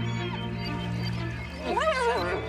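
Background music with a steady low drone, and near the end a spotted hyena's loud call that wavers up and down in pitch.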